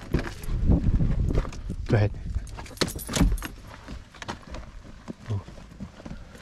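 Keys jangling, then the clicks and knocks of a car door being opened, with footsteps on gravel.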